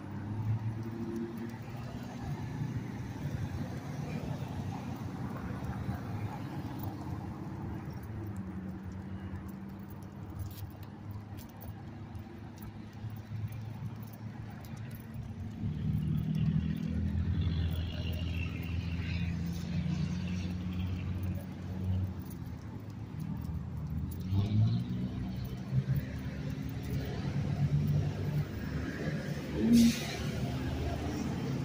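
Car engine noise from nearby street traffic: a low hum that swells about halfway through and again near the end.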